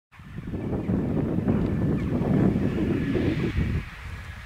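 Wind buffeting the microphone: a low, noisy rumble that starts just after the opening and dies down near the end.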